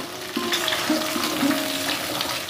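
Chunks of pumpkin and ridge gourd sizzling in an aluminium kadai while a metal spatula stirs them. They are being fried gently so they stay soft.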